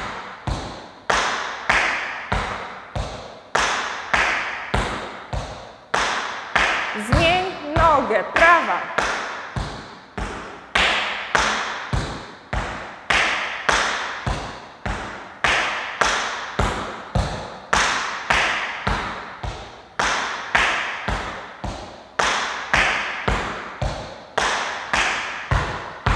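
Metal tap shoes striking a wooden floor in cramp rolls: quick four-strike groups, both balls of the feet then both heels, repeated in a steady, even rhythm.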